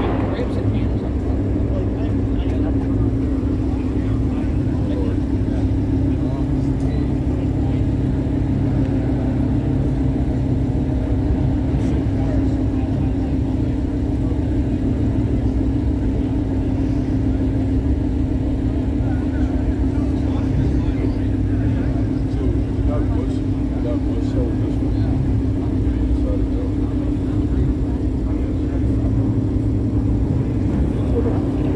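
A car engine idling steadily at close range, a constant low hum with no revving, under the chatter of a crowd.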